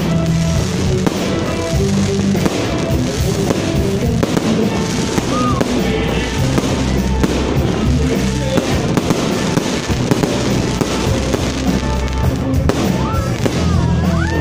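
Fireworks display going off, a dense, continuous run of bangs and crackles, with loud music playing alongside.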